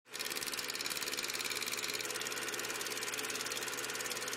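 Film projector running, a rapid, even mechanical clatter of film advancing through the gate.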